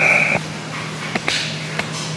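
A washing machine running, a steady low hum, with a short hiss at the very start and a few faint clicks.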